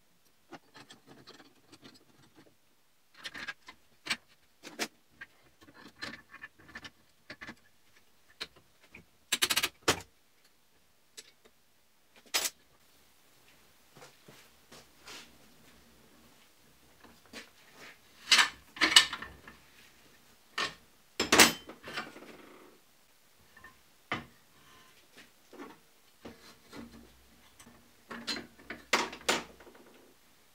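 Irregular metal clunks, knocks and scrapes as an aluminium Ural motorcycle engine crankcase is handled and turned on a homemade steel engine stand. The loudest knocks come in clusters about a third, two-thirds and nearly all the way through.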